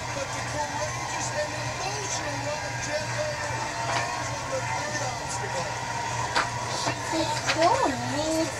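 Indistinct voices talking in the background over a steady low hum, with a few light clicks of wooden blocks being set onto a stacked tower.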